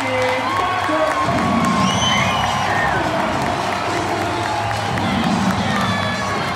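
Ballpark crowd cheering and clapping after the home team's final-out win, with music playing over the stadium speakers and a few whoops rising above the crowd.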